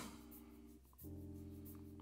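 Near silence with a faint, steady hum of a few held tones. It drops out briefly and returns about a second in.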